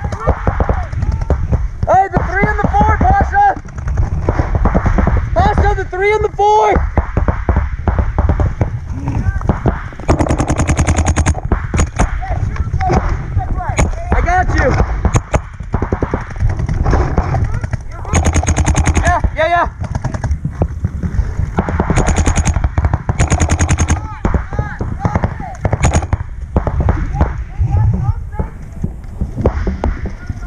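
Paintball markers firing rapid strings of shots, the strings starting and stopping throughout, with people shouting in the first few seconds.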